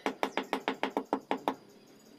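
About ten quick, hard knocks, some seven a second, from a hand-held rod being struck down repeatedly among bricks. They stop about a second and a half in.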